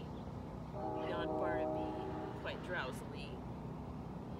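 A distant horn sounds one steady note for about a second and a half, starting about a second in, over a faint low steady rumble.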